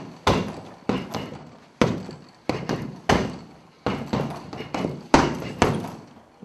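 Kicks and punches landing on a hanging heavy bag: about ten sharp thuds at irregular spacing, some coming in quick pairs.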